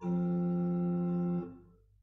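Pipe organ holding a sustained chord, steady with no vibrato, released about a second and a half in and dying away in the room's echo.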